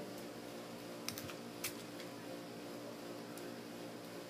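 A few faint, sharp clicks, irregularly spaced, over a steady low hum.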